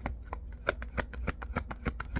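A deck of tarot cards being shuffled hand over hand, the cards slapping together in quick, even strokes, about seven a second.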